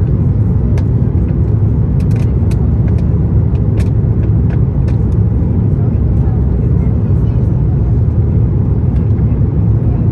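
Steady low rumble of an Airbus A330-900neo's Rolls-Royce Trent 7000 engines and the airflow over the airframe, heard inside the cabin on final approach with the flaps extended. A few faint clicks or rattles come in the first half.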